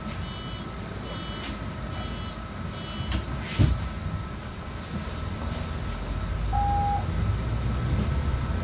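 City bus door-closing warning: four high beeps about a second apart, then a thump as the doors shut. A short lower beep follows and the bus engine's rumble rises as the bus pulls away.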